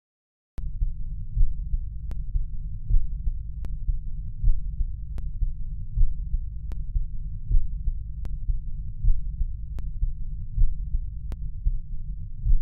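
Heartbeat sound effect: a low pulsing that swells about every second and a half, with faint sharp clicks at a steady pace. It starts about half a second in.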